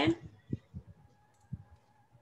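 Two soft clicks about a second apart, from a computer mouse, with a faint steady tone in the background during the second half.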